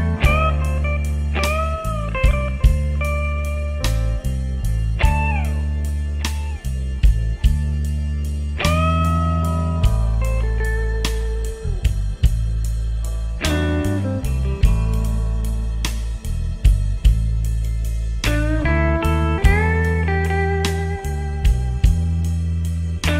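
Slow blues-rock instrumental passage: a lead guitar plays notes that bend up and slide down over a steady bass line and a regular drum beat.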